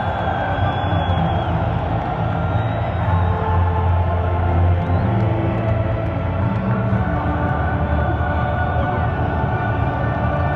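Music playing over a football stadium's loudspeakers, with the noise of a large crowd in the stands underneath.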